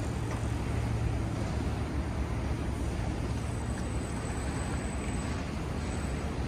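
Steady city street ambience: a low hum of distant traffic.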